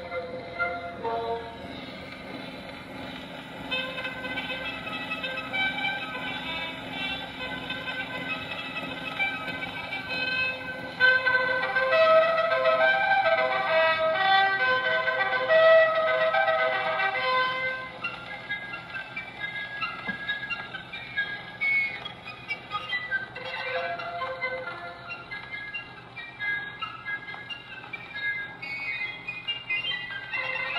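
Music playing from a Columbia 78 rpm record on a cabinet phonograph. The sound is thin, with no deep bass or high treble, and grows louder for several seconds in the middle.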